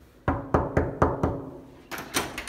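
Knuckles knocking on a hotel room door, five quick, even raps about a quarter second apart, each with a short hollow ring.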